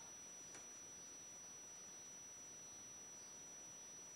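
Near silence: steady room tone with a faint high-pitched whine and a faint tick about half a second in.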